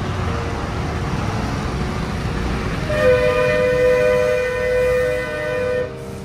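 A vehicle horn sounding one long, steady blast of about three seconds, starting about halfway through, over a low engine rumble of traffic stuck in a jam.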